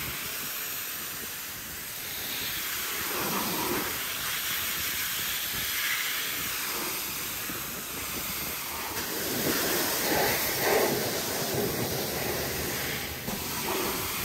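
Pressure washer's fan jet spraying onto a car's painted side panels, rinsing off snow foam and loosened dirt: a steady hiss of water that swells a little as the jet moves over the bodywork.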